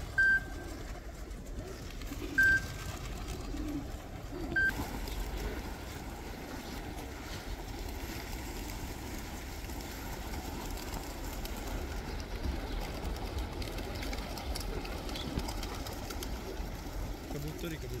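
A large flock of domestic pigeons cooing in a steady, continuous murmur. Three short high tones cut through in the first five seconds and are the loudest sounds.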